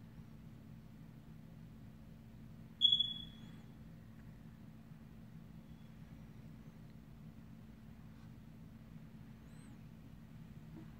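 Faint steady hum, broken once about three seconds in by a single short, loud, high-pitched squeak that falls slightly in pitch and dies away within half a second; a much fainter short chirp comes near the end.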